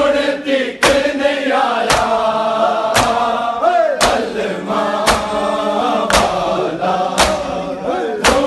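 A crowd of men chanting a mourning lament in unison while beating their chests together with open hands (matam), the slaps landing in time about once a second.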